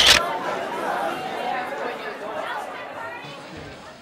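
Indistinct chatter of many voices in a large hall, fading steadily toward the end. A sharp, loud knock comes at the very start.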